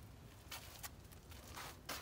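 Faint scuffs and rustles of someone walking with the camera, a few short strokes about half a second in and again near the end, over a low steady outdoor background.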